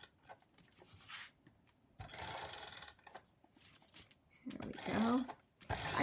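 Adhesive tape runner drawn along the edge of a card panel, laying tape with a ratcheting zip. It comes in a few separate strokes, the longest about two seconds in and lasting about a second, with a shorter one near the end.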